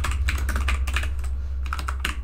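Fast typing on a computer keyboard: a rapid, uneven run of key clicks over a steady low hum.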